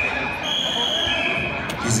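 Wrestling referee's whistle held in one long steady blast. It steps up in pitch about half a second in, drops back a little later and stops near the end, halting the bout.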